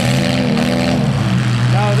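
Engines of several demolition derby cars running together in a loud, steady drone, with no crash impacts heard.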